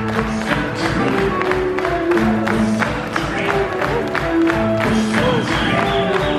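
Live rock band playing a steady beat with drums, bass, electric guitar and keyboards, with the audience clapping along.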